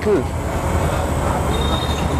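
Street traffic: a steady rumble of passing motor vehicles, with a faint thin high tone near the end.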